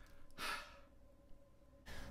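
A woman's breathy sigh, a tired exhale after a strenuous stretch of clarinet playing, about half a second in, then a quick breath in near the end.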